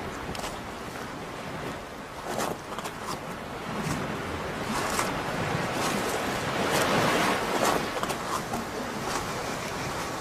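Sea surf washing on a rocky shore, swelling louder in the middle, with irregular knocks of footsteps on loose stones.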